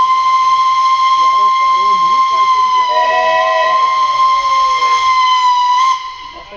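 Steam locomotive whistle blowing one long, steady, high blast that cuts off near the end. A second, lower whistle tone sounds briefly partway through.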